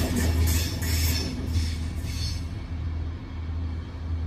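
Music playing over the noise of a Network Rail multi-purpose vehicle receding along the track. The train's hiss dies away about two and a half seconds in, and the music's low, steady bass carries on.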